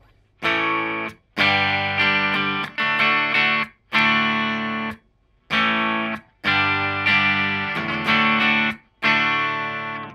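Clean electric guitar strummed through an amplifier, with the Dean Nostalgia humbucker in the bridge position: about ten chord strums in short phrases, each cut off by a brief mute. The tone is bright, twangy and jangly.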